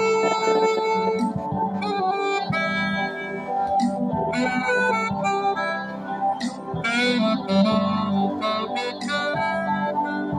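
Saxophone playing a slow melody in short phrases, amplified through a microphone, over steady sustained backing chords.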